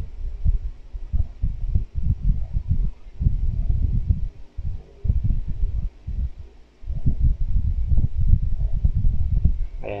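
Irregular low thumps and rumble, several a second with a short lull partway through: fingers tapping on a phone's touchscreen keyboard, carried through the phone's body to its own microphone.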